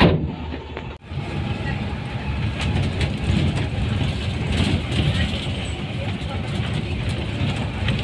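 Bus running on the road, heard from inside the cabin: a steady low rumble of engine and road noise with light rattles. A brief loud burst at the start and a sudden break about a second in.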